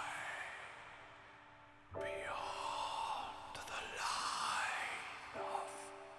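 Soft piano chords, struck about two seconds in and again near the end and left to ring, under a layer of airy, whispery sighing sounds that glide up and down in pitch.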